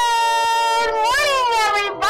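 One long, high sung note, bending up in pitch and back down about a second in, with a new note starting right at the end.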